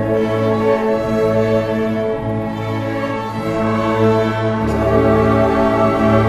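A string orchestra of violins, violas and cellos playing a slow classical piece, with long bowed chords and low cello notes held and changing every second or so.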